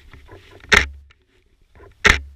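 A runner on a forest trail at night, heard close up: a loud short rush of breath or movement about three-quarters of a second in and again at the end, with fainter footfalls and rustling between.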